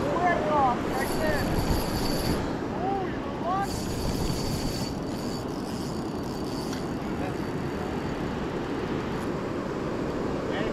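Steady rushing of river water below a hydro dam, an even low rush that holds throughout. Faint voices carry over it in the first few seconds.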